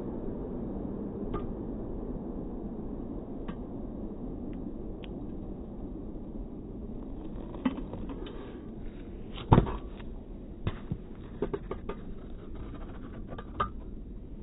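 A car's road noise fades away, then a stunt scooter rolls over asphalt with a few sharp clicks and clacks, the loudest a hard clack of the scooter striking the pavement about two-thirds of the way in.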